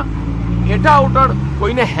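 A man speaking over a steady low hum that stops shortly before the end.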